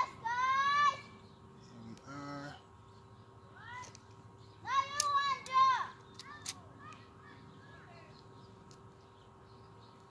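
Children's voices calling out in the background: a high-pitched rising call just after the start and another burst of calls about five seconds in. A few sharp clicks fall between about five and six and a half seconds, over a faint steady hum.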